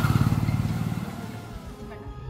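A motor vehicle engine going by with a fast, even pulsing, loudest just after the start and fading away.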